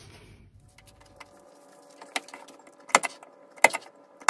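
Paper being handled, then a desk stapler clicking sharply through the fold of a small paper booklet: a few clicks, the two loudest about three seconds in and half a second apart.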